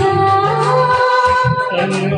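A woman singing a Hindi film song into a microphone over a recorded karaoke backing track, holding long sung notes, as part of a male–female duet.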